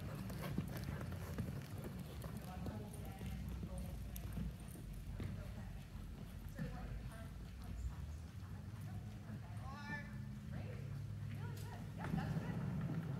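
Hoofbeats of a ridden horse on the footing of an indoor arena, an irregular clip-clop as the horse moves past.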